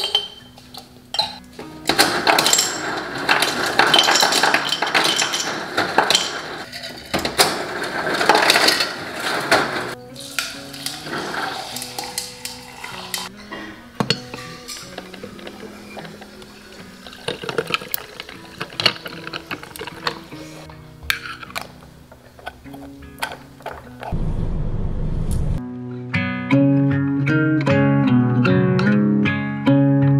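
Ice cubes clinking and clattering in a glass mason jar as iced coffee is made, with coffee poured from a glass carafe over the ice. Acoustic guitar music comes in near the end.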